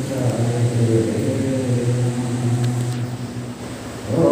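A man's voice chanting one long held low note through the microphone, the vowel shifting slightly as it is held, fading away near the end.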